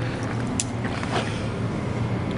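A steady low hum over even background noise, with a faint click about half a second in.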